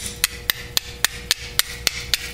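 Flint struck against a steel fire striker in quick repeated strokes: sharp clicks at about three to four a second, each strike throwing sparks.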